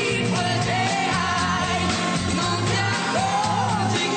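A pop song playing: a singing voice over a steady beat and bass line.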